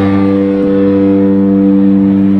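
A rock band's amplified instrument holding one low sustained note, loud and steady with no change in pitch.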